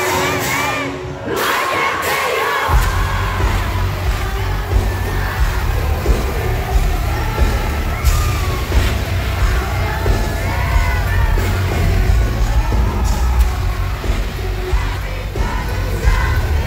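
Live metal band in concert with a cheering, shouting crowd. About three seconds in the band comes in with loud, booming bass and drums, and voices carry on over it.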